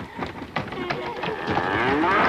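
Animal cries, several overlapping calls that rise and fall in pitch, growing louder and thicker near the end.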